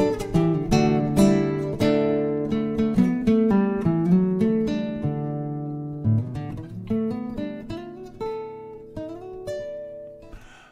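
Nylon-string classical guitar played solo, a run of plucked notes that thins out about halfway through. The last few notes are left to ring and fade as the tune ends.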